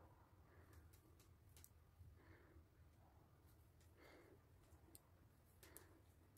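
Near silence: room tone with a few faint clicks and soft rustles from metal knitting needles and yarn being worked by hand.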